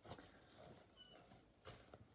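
Near silence: room tone with a faint knock at the start and another soft knock about two seconds in, like light handling.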